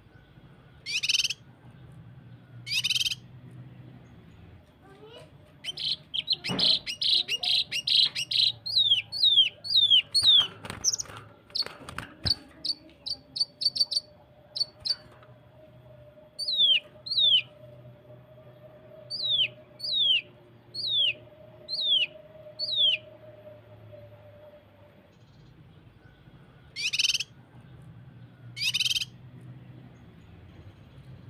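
Blue-masked leafbird (cucak kinoi) singing: two harsh, buzzy notes, then a dense burst of rapid-fire notes, then a run of short downslurred whistles at about one a second, and near the end two more buzzy notes. A few soft knocks come in the middle.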